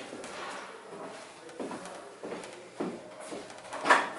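The springs and overhead bar of a Pilates reformer's trapeze frame creak and click as the bar is worked against the spring tension. There are several short creaks, and the loudest comes near the end.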